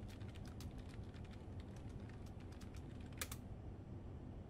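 Typing on a computer keyboard: a quick run of key clicks for about two seconds, a pause, then a louder cluster of clicks near the end as a message reply is typed and sent. A low steady hum runs underneath.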